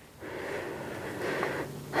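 A man's breath, one long noisy exhale lasting over a second.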